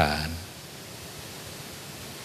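A man's voice finishes a word through a microphone, then a steady, even hiss of room tone and recording noise with no other sound.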